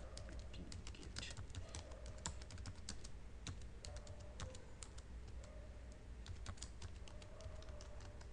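Computer keyboard keys clicking in quick, irregular runs of typing as a terminal command is typed, over a low steady hum.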